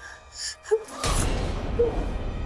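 A woman's sharp gasp of shock about a second in, as low dramatic background music comes in under it.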